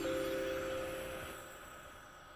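Short TV programme bumper jingle: a few held, chime-like notes that fade away.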